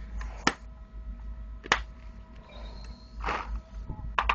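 Handling of a paintball marker and its Empire Prophecy loader: two sharp clicks a little over a second apart, the first as the loader's lid is snapped shut over the paintballs, then a brief rustle near the end, over a faint steady hum.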